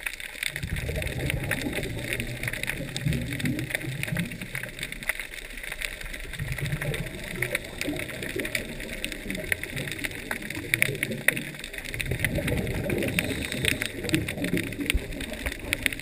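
Scuba regulator breathing heard underwater: three long exhalations of bubbling rumble with short pauses for inhaling between them, over a steady fine crackle of clicks.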